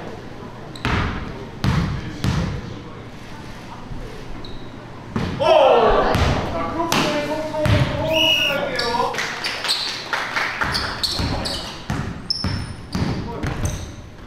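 A basketball bouncing on a hardwood indoor court: a few single bounces in the first couple of seconds, then quicker repeated bounces in the last few seconds as dribbling starts, with the hall's echo.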